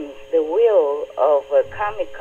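Speech only: a woman talking over a telephone line, her voice narrow and thin.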